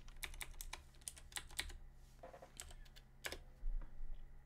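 Typing on a computer keyboard: an irregular run of keystrokes as a spreadsheet formula is entered, with a louder cluster of strokes a little after three seconds in.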